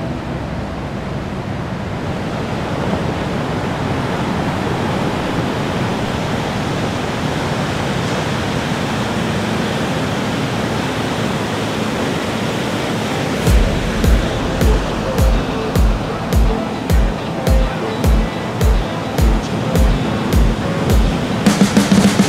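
Steady noise of rough sea waves and surf. About thirteen seconds in, a bass-drum beat of about two thumps a second starts under the water sound as a song begins.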